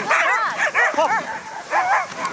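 Several sled dogs barking and yipping in quick, high, arching calls that overlap, several a second.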